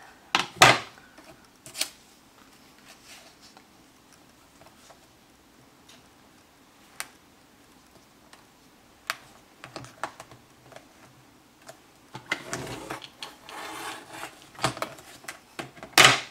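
Paper trimmer being used on card: a few sharp clicks and knocks as the card and trimmer are handled, then, from about twelve seconds in, a scraping run of several seconds as the blade carriage slides along the rail.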